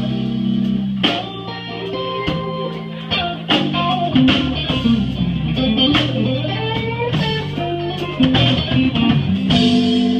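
Live band playing a slow blues: electric guitar lead fills with bent notes over bass guitar and drums, with no vocals.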